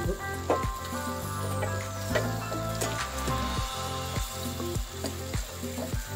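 Cornstarch-thickened sauce with baby corn and bell pepper sizzling in a frying pan while a spoon stirs it, with repeated light clicks of the utensil against the pan. Background music plays underneath.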